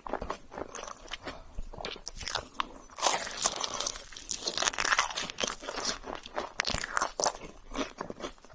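Biting into and chewing a torched marshmallow on a stick, its browned, caramelised crust crackling in many small crisp clicks. The crackling is densest and loudest from about three seconds in.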